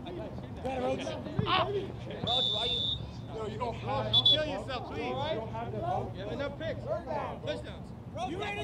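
Several men's voices talking and calling out across an open playing field, the words not clear. A short high-pitched tone sounds about two seconds in, with a briefer one about four seconds in.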